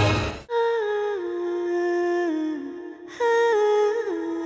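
Dramatic background score cuts off sharply about half a second in. Then a short end-card jingle plays: one clear melody line in two falling phrases, each note stepping and sliding down to the next.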